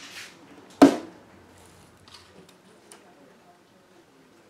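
A chisel trimming a wood-veneer patch on a hardboard surface: a brief scrape, then one sharp, loud chop about a second in as the edge cuts through the veneer onto the board, followed by a few faint taps.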